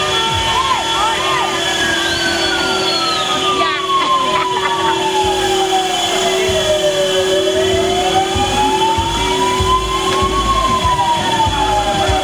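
A siren wailing slowly in long sweeps: falling for about five seconds, rising for about three, then falling again, over a steady held tone and the rumble of vehicles in traffic.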